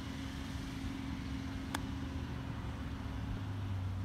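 A single sharp click a little under two seconds in as a golf club strikes the ball on a chip shot. A steady low hum runs underneath.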